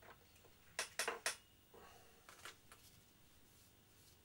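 Hands handling a small model part and tissue paper on a desk: a quick run of three sharp clicks about a second in, then fainter rustles and ticks.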